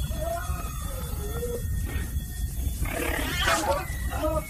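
Film monster growling in a series of wavering calls, with a louder roar near the end, over a steady low rumble.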